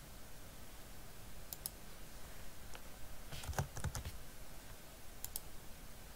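Faint computer keyboard keystrokes and mouse clicks: a pair of clicks about a second and a half in, a quick run of keystrokes around the middle as a short name is typed, and another pair of clicks near the end.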